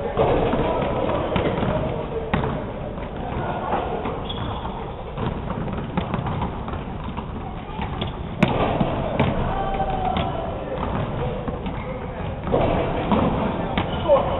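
Basketballs bouncing on a hardwood court floor, a series of irregular thumps, the sharpest a knock about eight and a half seconds in, with indistinct voices in the background.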